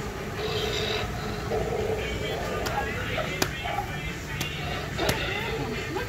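Indistinct voices and background music, with three sharp knocks in the second half.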